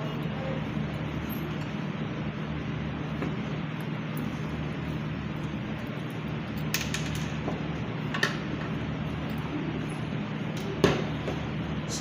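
A few light clicks of a screwdriver and small metal parts against a sewing machine motor's housing as the carbon-brush screws are worked loose, the sharpest about a second before the end, over a steady room hum.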